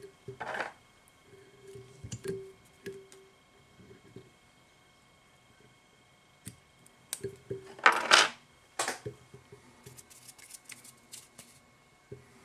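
Handling noises of fly-tying at the vise: scattered small clicks and rustles as thread, floss and tools are worked. There are a few louder short noise bursts, one near the start and a cluster about eight seconds in.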